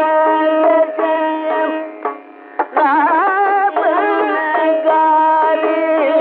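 Carnatic classical music from an old radio recording: one melodic line with sliding, wavering ornamented notes over a steady drone, with no percussion. The line briefly drops away about two seconds in. The sound is dull, with nothing above the mid-treble.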